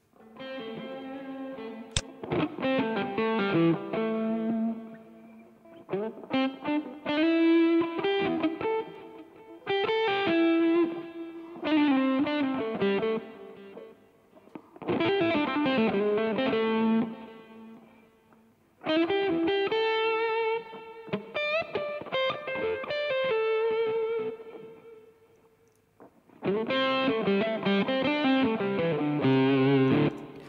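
A recorded guitar track played back solo, clean and without amp simulation, with a bit of reverb, in phrases of picked notes and chords broken by short pauses. There is a sharp click about two seconds in.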